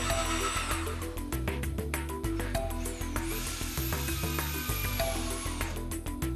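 Background music with a steady beat, over an electric drill boring into a window frame. The drill's high whine comes twice: briefly at the start, then again for a little under three seconds from about the middle.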